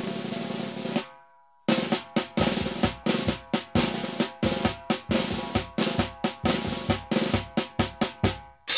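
Marinera norteña band music, drums to the fore. A drum roll cuts off about a second in; after a short break, snare and bass drum strike a steady beat of roughly three strokes a second over held notes.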